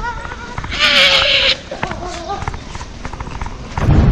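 A woman's voice laughing and exclaiming without clear words, with a loud high shriek about a second in. A low rumble comes in near the end.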